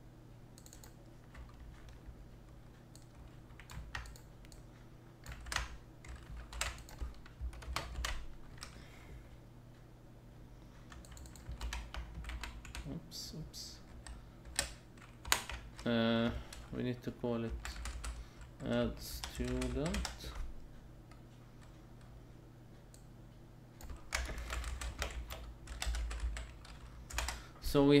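Typing on a computer keyboard in uneven runs of key clicks, with pauses between runs. A voice makes two brief wordless sounds past the middle.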